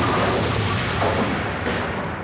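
Bowling ball crashing into tenpins: a loud clattering crash that fades away gradually over about two seconds.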